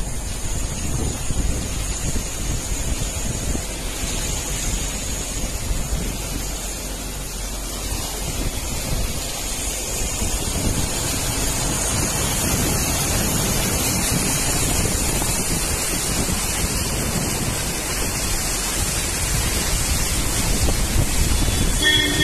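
Steady rushing noise of heavy rain and floodwater, with wind buffeting the phone's microphone, growing louder about halfway through.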